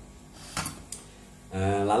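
Two light knocks of plastic kitchenware being handled on a table, close together, a little over half a second in; a man's voice starts near the end.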